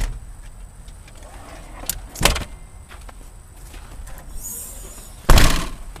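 Rear tailgate of a 2007 Honda Odyssey minivan being shut, with a loud slam near the end, after a lighter clunk about two seconds in from the rear seat being handled.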